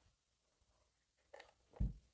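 Near silence, then a faint tap and a soft, dull knock near the end as a hot glue gun is set down on the table.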